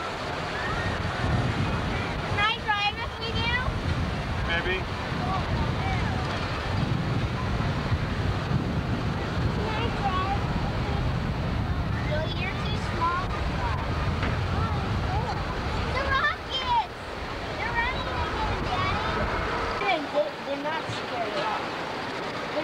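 Wind rushing over a camcorder microphone on an open-air Skyway gondola, a steady low rumble that falls away about two seconds before the end. Scattered voices chatter over it.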